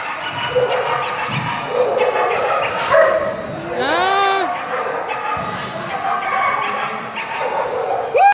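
Dogs barking repeatedly in an echoing hall, with one longer yelp that rises in pitch about halfway through.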